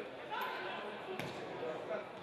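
Football match sound: a football kicked once with a sharp thud about a second in, amid faint shouts and voices in a sparsely filled stadium.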